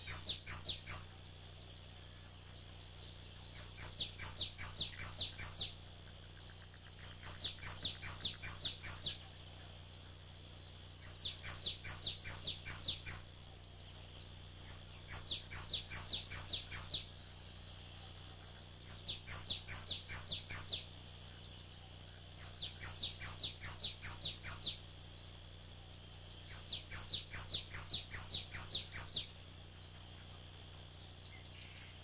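A songbird singing: phrases of quick down-slurred notes, each phrase lasting about two seconds and repeated every four seconds or so, over a steady high hiss.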